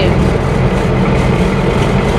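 Bus engine running steadily with road noise, heard from on board.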